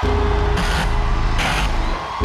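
Loud electronic intro of a live rock song: a deep, steady bass drone under a held synth tone, with two hissing noise swells about a second apart. Crowd cheering carries on underneath.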